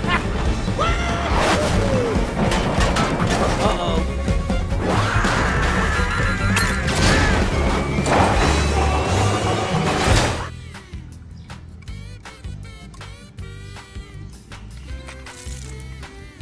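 Cartoon soundtrack: music with character voices and crash-like sound effects, loud for about ten seconds, then cutting off suddenly to quieter background music with small clicks and taps.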